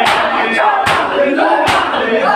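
Matam: a crowd of men striking their bare chests in unison, a sharp slap a little more than once a second, over many men's voices chanting a noha together.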